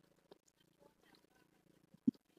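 Near silence, with one faint tick about a third of a second in.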